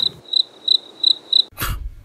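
High-pitched electronic tone pulsing about three times a second, a waiting or loading sound effect. A short breathy hiss comes near the end.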